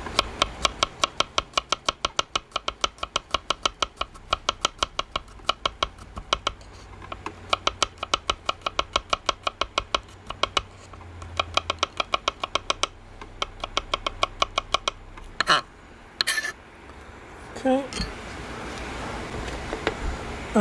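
Kitchen knife slicing garlic cloves on a bamboo chopping board: a quick, steady run of taps about five a second, with short pauses. A couple of louder knocks follow near the end.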